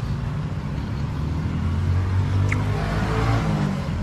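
A motor vehicle engine running close by, a steady low hum that swells from about two seconds in and eases off near the end, as a vehicle passes.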